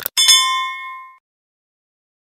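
A mouse click followed by a bright bell ding that rings out and fades over about a second: a notification-bell sound effect for a subscribe-button animation.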